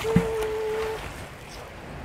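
A magnet on a rope thrown out across a canal: a short thump, then a steady flat tone lasting about a second, then quieter water background.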